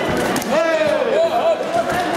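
Voices shouting during a full-contact kickboxing bout, with a few sharp thuds of boxing gloves striking near the start.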